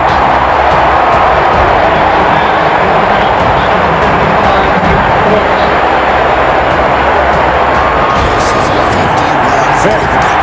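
Loud background music with sustained low notes, laid over football broadcast audio with stadium crowd noise.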